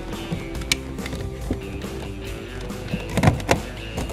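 Plastic master power-window and door-lock switch panel of a 2003 Chevy Tahoe being pressed into the driver's door armrest, its clips snapping in with a click about a second in and a couple of louder snaps near the end. Steady background music plays throughout.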